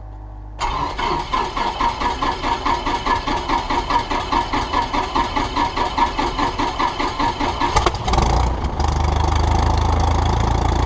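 Piper Warrior's four-cylinder Lycoming O-320 engine being started. The starter cranks it with a rapid, even pulsing for about seven seconds, then the engine catches with a sharp burst about eight seconds in and settles into a steady idle.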